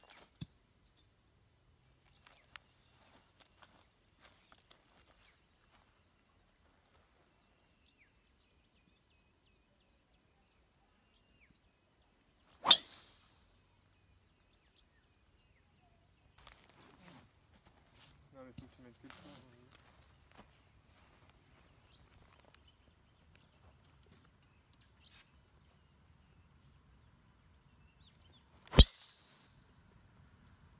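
Two sharp cracks of a golf club head striking a teed ball, about sixteen seconds apart, each with a short ring after it. The second is a full tee shot with a fairway wood.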